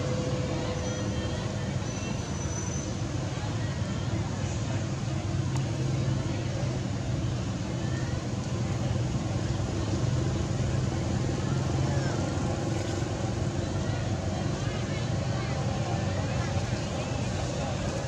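Continuous outdoor background noise: a steady low rumble under a dense hiss, with many short faint chirps scattered through it.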